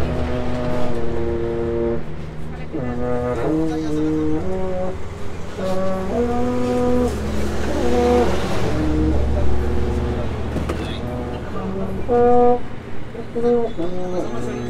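Baritone horn being played: a series of held brass notes in short phrases, stepping up and down in pitch with brief breaths between them.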